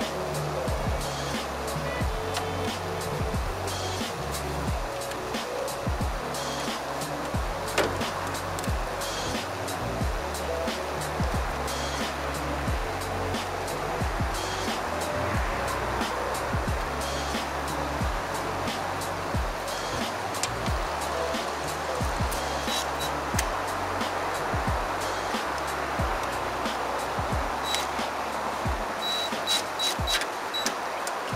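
Background music with a steady beat and a bass line.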